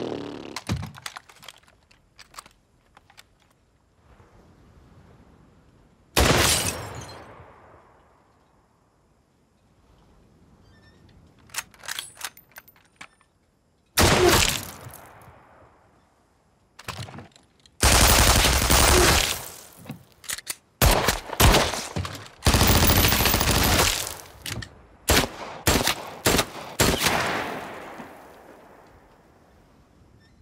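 Gunfire: a few single shots with ringing tails, then rapid strings of shots and long sustained bursts through the second half, dying away shortly before the end.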